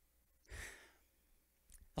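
A short sigh, a breath out into a close handheld microphone, about half a second in; otherwise near silence.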